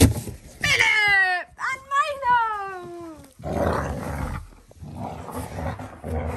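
Alaskan malamute vocalising: two drawn-out woo calls that fall in pitch, the second longer than the first, followed by a stretch of rough rustling noise.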